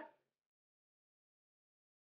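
Dead silence, with no room sound at all, after a woman's voice dies away at the very start.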